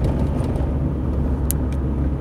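Car driving along a road, its engine and tyre noise heard as a steady low rumble inside the cabin, with a brief high click about a second and a half in.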